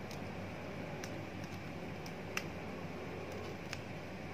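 Faint, scattered small clicks and ticks of hard plastic as a thin toy sword is worked into the hand of a PVC figure, the sharpest about two and a half seconds in, over a steady low room hum.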